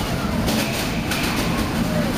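Combat robots fighting in an enclosed arena: a steady mechanical rumble of robot motors, with a sharp hit about half a second in.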